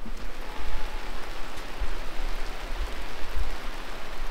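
Steady rain falling on a caravan's fabric awning, an even hiss with an uneven low rumble underneath.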